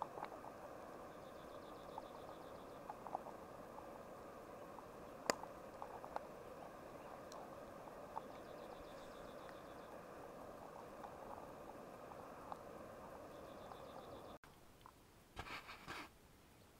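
Steady low hiss of a small canister gas stove's burner under a pot, with light clicks of plastic tongs against the pot and one sharper click about five seconds in. A faint high pulsing trill comes three times. The hiss cuts off suddenly near the end.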